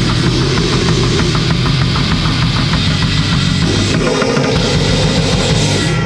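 Bestial black metal played at full tilt: heavily distorted guitar and bass over fast, dense drumming.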